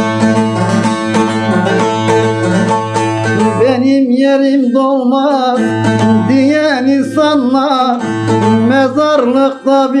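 Bağlama (long-necked Turkish saz) strummed and plucked in a Turkish folk melody. About four seconds in, a man's singing voice comes in over it.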